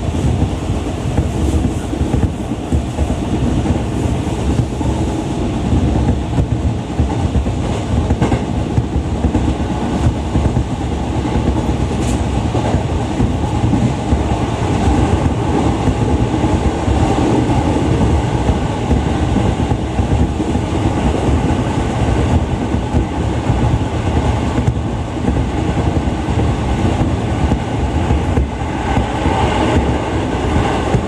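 Running noise of a JR 211 series electric train at speed, heard inside the carriage: a steady loud rumble of wheels on rail, with a few faint clicks.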